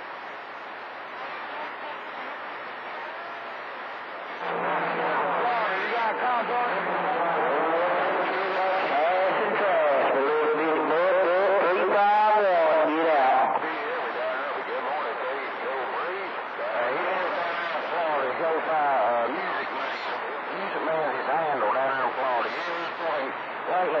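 CB radio receiving on channel 28: static hiss for the first few seconds, then faint, garbled voices of distant skip stations talking over one another through the noise, too muddled to make out.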